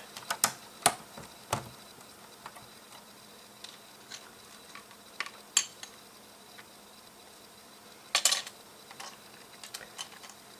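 Plastic LEGO pieces clicking and tapping as they are handled and pressed onto a model. There are a few sharp clicks in the first two seconds, scattered taps after that, and a short cluster of clicks about eight seconds in.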